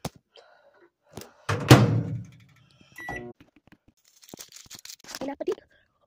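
A loud, deep thunk a little under two seconds in, among scattered knocks and clicks from objects being handled and set down.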